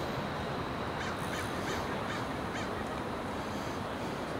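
Crows cawing repeatedly and irregularly over a steady background rush.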